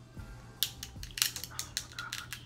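Cooked shellfish shell cracked and peeled apart by hand, a quick run of sharp crackles and snaps starting about half a second in.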